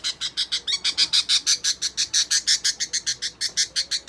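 Budgerigar squawking in a rapid, unbroken run of short calls, about nine a second, while held restrained in a hand for handling.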